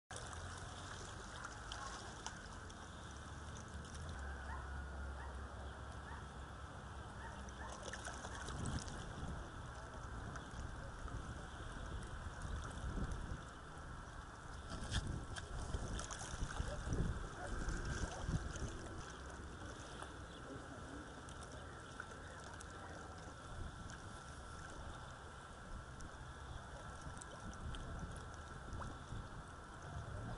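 Small waves lapping against a rocky shore, a steady outdoor wash of water sound, with a louder, irregular stretch around the middle.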